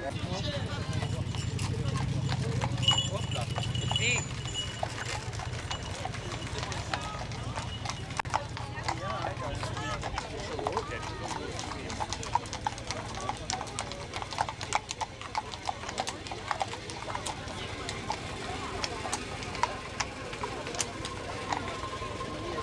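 Horses' hooves clip-clopping at a walk on a paved road, several animals passing in irregular, overlapping strikes. A low rumble runs under the first several seconds.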